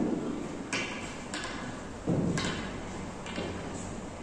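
Carom billiard balls in play on a three-cushion table: a handful of sharp clicks as the balls strike one another, mixed with duller thuds as they hit the cushions, spaced unevenly over the few seconds.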